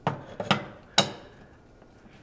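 Screwdriver working a loose screw on a server rack battery's front panel: three sharp metal clicks about half a second apart in the first second, then quiet handling. The screw keeps turning without tightening because it is loose.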